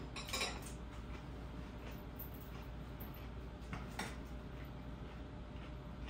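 Metal cutlery clinking lightly against glass dishes a few times, with the clearest clinks about half a second in and about four seconds in.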